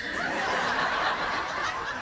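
Audience laughing together, a dense wash of many voices that tapers off near the end.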